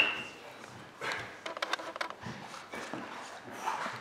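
Quiet room with faint movement and low voices. About a second and a half in comes a quick run of several small clicks.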